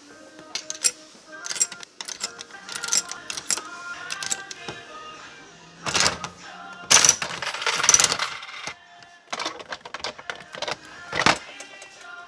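Coin-operated gacha capsule machine: a run of metallic clicks as coins go into the slot, then the metal crank ratcheting round, with the loudest clattering bursts about six to eight seconds in. Faint background music plays underneath.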